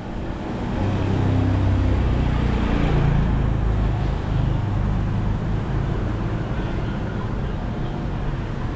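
Engine of a nearby motor vehicle running, swelling about a second in and then holding a steady low drone, over street traffic noise.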